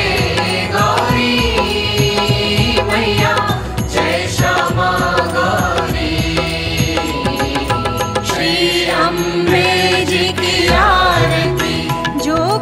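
Hindu devotional music: a sung, chant-like melody over drums and instruments, with a steady beat.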